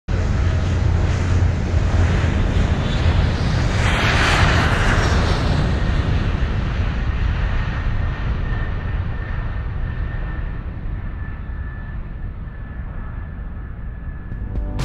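Jet airliner's engines at takeoff power, heard from inside the cabin as it leaves the runway and climbs: a deep rumble under dense rushing noise, with a surge of brighter rushing noise about four seconds in. From about seven seconds a steady high engine whine comes through as the noise slowly eases.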